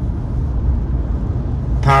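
Steady low rumble of a vehicle on the move, engine and road noise heard from inside the cab. A man's voice starts speaking near the end.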